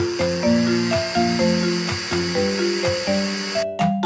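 Blender sound effect, a steady high whir, over a bouncy children's song melody; the whir cuts off suddenly near the end.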